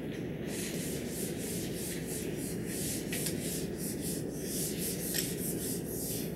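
Whiteboard eraser rubbing across a whiteboard in quick repeated back-and-forth strokes, about three a second.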